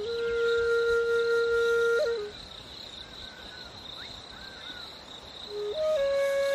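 Background music: a flute-like wind instrument holding one long note for about two seconds, then a quieter stretch of about three seconds before the next note starts near the end. A steady high tone runs underneath throughout.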